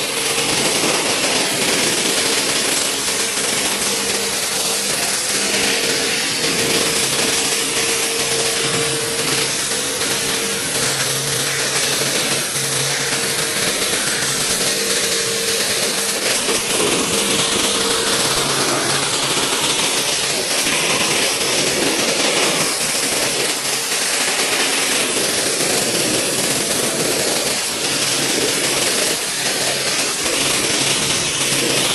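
Pressure-washer foam cannon spraying foam in a continuous loud, even hiss, with a steady hum underneath; one tone of the hum drops out a little past halfway.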